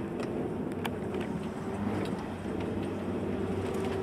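Bus engine and road noise heard from inside the passenger cabin: a steady drone with a held engine hum and scattered light rattles.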